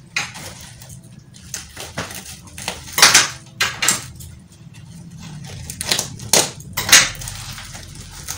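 Plastic bag wrapping crinkling and rustling as a wrapped bundle is handled and pulled open. The crackles come irregularly, loudest about three seconds in and again shortly before the end.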